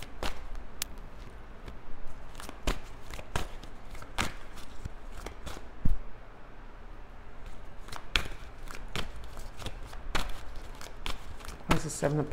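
A tarot deck being shuffled by hand: irregular soft clicks and riffles of cards, with one louder knock about six seconds in.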